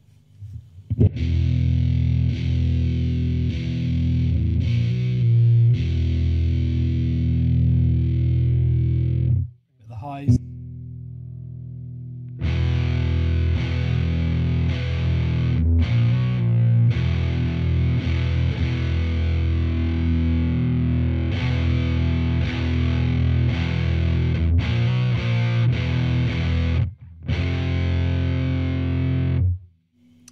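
Electric guitar played through an Arion Metal Master SMM-1 distortion pedal, an HM-2 clone, set to high gain with its EQ at an extreme, through a miked valve combo amp: heavy distorted riffing and chords. The playing breaks off briefly about a third of the way in and again near the end.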